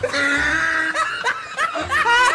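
Several people laughing hard, opening with a long high-pitched squeal of laughter and breaking into shorter bursts.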